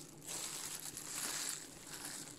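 Thin plastic rustling and crinkling as groceries are handled and packed away, a soft continuous rustle without sharp knocks.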